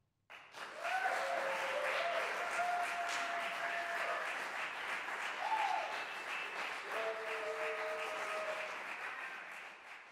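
Audience applauding at the close of a live percussion performance, starting suddenly and running steadily, with a few cheers heard over the clapping. It fades out near the end.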